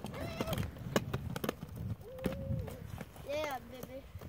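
Inline skate wheels rolling on an asphalt path: a low rumble with scattered sharp clicks and knocks. Children give three short calls over it.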